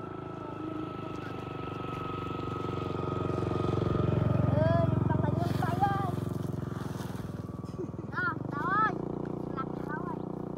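Small Honda underbone motorcycle engine running and revving, rising to its loudest about four to five seconds in and then easing off, as the bike is pushed through mud. Boys call out over it around the middle and again near the end.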